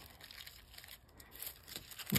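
Faint, soft crinkling of Press'n Seal plastic wrap being handled and pressed over small paper letter stickers, with a few slightly louder crinkles past the middle.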